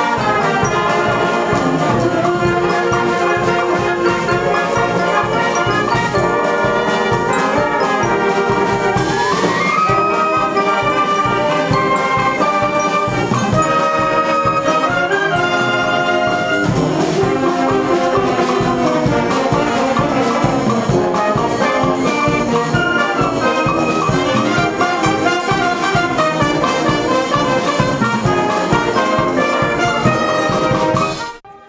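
A wind band of flutes, clarinets, saxophones, trumpets, horns and tubas plays a piece live, full and steady, with a rising passage about nine seconds in.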